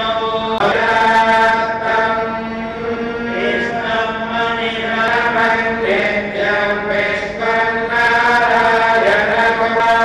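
Priests chanting mantras in a continuous, melodic recitation, with notes held and changing pitch every second or so over a steady low tone.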